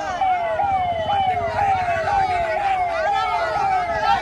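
Police vehicle's electronic siren wailing in a repeating pattern, each tone jumping up and sliding down, about two a second, with voices under it.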